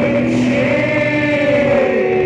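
A live band playing an improvised, droning passage. Layered held tones slowly bend in pitch, with no words sung.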